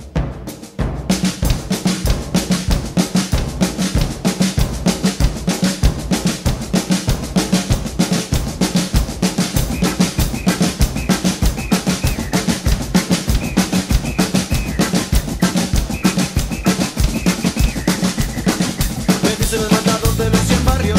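Acoustic drum kit played fast and busy: dense snare and tom strokes with bass drum and cymbals, after a brief drop in level about a second in.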